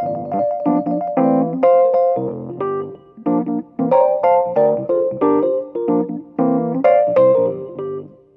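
Solo Rhodes electric piano playing a funky passage of struck chords and single notes in a syncopated rhythm, in G minor at about 90 beats a minute.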